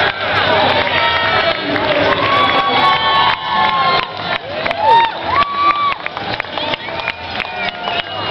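Crowd of spectators cheering and calling out over a continuous babble of voices, with high whoops that rise and fall again and again.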